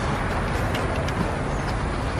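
Steady rushing background noise with a low rumble, even throughout, with no distinct knocks or tones.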